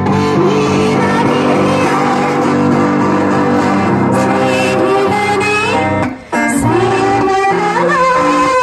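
Live amplified band music: a woman singing a bending melody over electric guitar and sustained low notes, with a brief break about six seconds in before the music picks up again.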